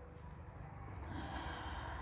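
A man drawing a soft breath through nose and mouth, heard as a faint hiss from about a second in, over a low steady hum.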